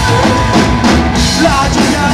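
Punk rock band playing live on stage: drum kit and electric guitars, loud and steady.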